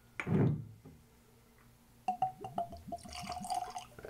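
Whisky poured from a glass bottle into a tasting glass, glugging irregularly through the bottle neck from about two seconds in. A brief rushing sound comes just after the start.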